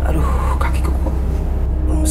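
A steady, deep rumbling drone, a soundtrack effect laid under the scene.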